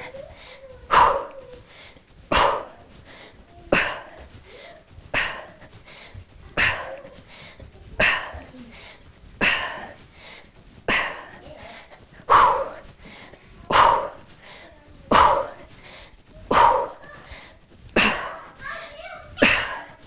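A woman's short, forceful exhales, one with each Russian kettlebell swing, in an even rhythm of about one every one and a half seconds.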